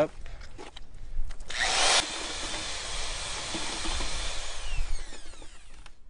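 Electric drill with a paddle mixer running in a bucket, mixing lime and cement into clay slip. It starts about one and a half seconds in with a few knocks before it, and its whine falls in pitch as it slows near the end.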